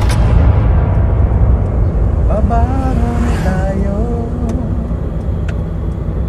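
Heavy low wind rumble on the microphone, with engine and road noise from a moving vehicle. A person's voice rises and falls briefly about halfway through.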